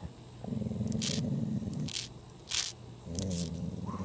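A dog growling low at a cicada in two stretches, the second shorter, with short sharp hissing bursts in between as it noses at the bug.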